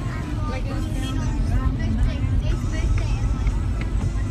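Car cabin noise while driving on a wet road: a steady low rumble of engine and tyres, with a voice from the car radio over it.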